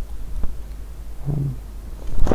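A spiral notebook being handled close to the microphone, with faint paper clicks, and a short low hummed 'mm' from a man about halfway through, over a steady low hum.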